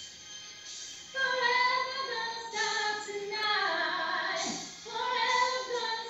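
A woman singing held notes that glide up and down in pitch, coming in louder about a second in. It is heard through a laptop's speaker over a video call.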